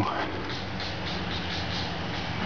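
Insects chirping in a steady run of quick pulses, over a faint low hum.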